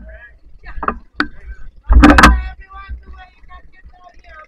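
Several sharp knocks and bumps against a speedboat as people climb aboard from shallow water. The loudest is a heavy thump with a low rumble about two seconds in. Voices chatter in the background.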